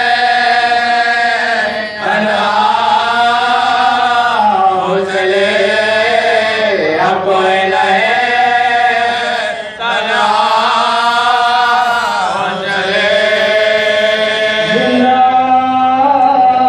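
Men's voices chanting a noha, an Urdu Shia lament, unaccompanied, in long drawn-out melodic phrases with brief breaks for breath about two and ten seconds in.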